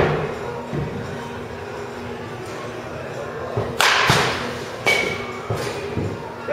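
A baseball bat swung hard through the air, a short whoosh about four seconds in, with a sharp thud at the start and another about a second after the swing.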